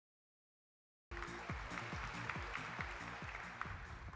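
Silence for about a second, then stage music with a steady beat of about two drum hits a second over audience applause, easing off toward the end.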